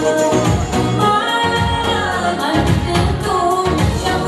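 A woman singing a pop song into a microphone over an amplified keyboard backing with a steady beat.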